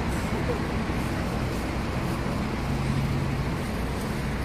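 A vehicle engine idling with a steady low hum, over the even noise of road traffic.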